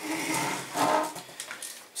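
A small table pushed across a tiled floor, its legs scraping, loudest about a second in.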